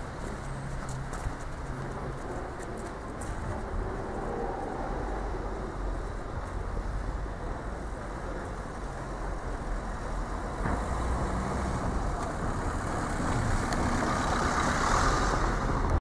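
Road traffic noise: a steady rumble of passing cars, growing louder in the last few seconds.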